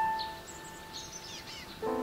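Slow, soft piano music: a single high note fading away, then a lull with faint bird chirps, and a new chord near the end.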